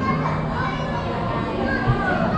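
Busy indoor hall ambience: many children's voices and chatter over faint background music, with a short low thump near the end.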